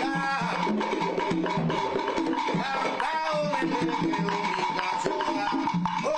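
An Afro-Cuban vocal group sings together in several voices, backed by hand percussion clicking out a rhythm.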